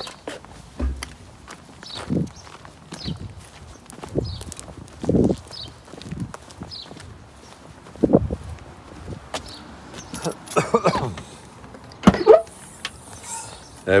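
Footsteps on tarmac, about one a second, with scuffs and knocks from a motorcycle wheel and tyre being carried; a sharp knock near the end.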